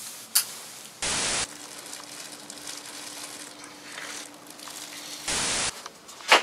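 Two short bursts of white-noise static, each about half a second long and about four seconds apart, with a faint steady low hum between them.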